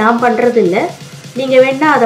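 A woman's voice, breaking off briefly about a second in and then resuming.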